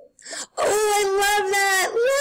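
A high-pitched voice holding a long wordless note for over a second, then a second, slightly higher note.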